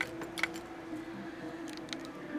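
Handling noise from a camcorder being moved: a few sharp clicks, one at the start, one about half a second in and a couple near the end, over a steady low hum.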